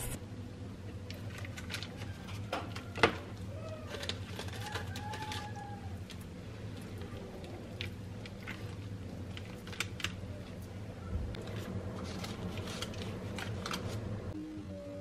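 Light, scattered clicks and taps of hands and utensils handling food on a metal baking tray: a ricotta-cheese stuffing is spread onto butterflied raw chicken breasts on parchment paper, and the breasts are folded closed. The sharpest tap comes about three seconds in, over a faint steady low hum.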